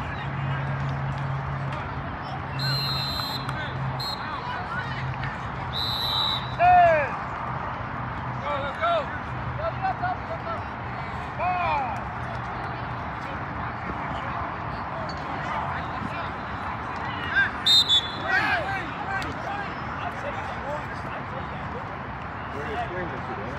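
Sideline shouting from coaches and spectators at an outdoor youth flag football game, short shouted calls rising and falling through the middle of the clip. A referee's whistle sounds in short, shrill blasts about three seconds in, again near six seconds, and around seventeen to eighteen seconds.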